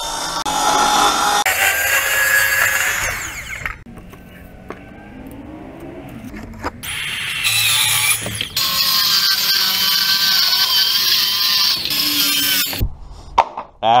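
Circular saw ripping plywood in two long cuts. The motor winds down after the first cut about four seconds in, spins back up around seven seconds, and makes a second, longer cut that ends shortly before the end.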